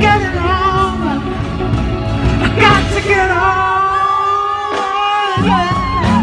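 Live band playing a slow rock song, with a high wordless lead line sliding and wavering over it. The bass and drums drop out for a moment about five seconds in.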